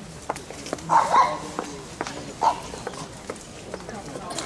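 A dog barking: two quick barks about a second in and one more about a second and a half later, with footsteps clicking on the pavement.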